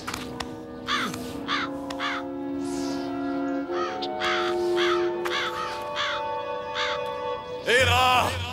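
Harsh, crow-like bird caws repeat in short cries, about one or two a second, over background orchestral music with long held notes.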